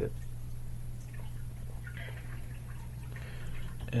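A steady low hum, with a few faint, scattered handling sounds as an airsoft tightbore barrel with a rubber hop-up bucking is turned in the hands.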